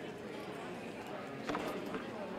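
Several audience members talking at once among themselves in a large hall, with one knock about one and a half seconds in.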